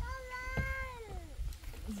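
A cat meowing once: one long call that holds its pitch, then slides down at the end.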